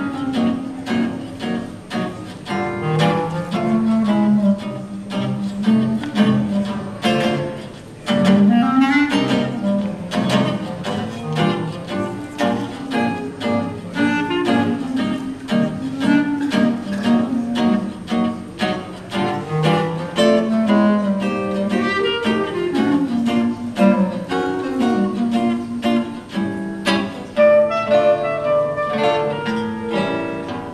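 Clarinet and archtop guitar playing a jazz duet, the clarinet carrying a winding melody over the guitar's chords.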